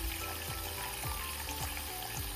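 Thin stream of tap water running into a shallow sink of water, a steady hiss, over background music with a beat of about two thumps a second.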